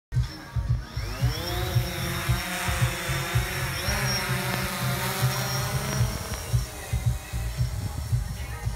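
A DJI Phantom camera drone's motors spinning up with a rising whine about a second in, then a steady whine as it lifts off and climbs, fading near the end. Music with a steady beat plays under it.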